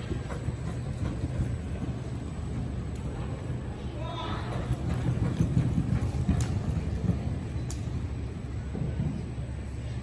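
Horse galloping hard on soft arena dirt: a fast, continuous run of hoofbeats over a steady low hum, with a voice calling out about four seconds in.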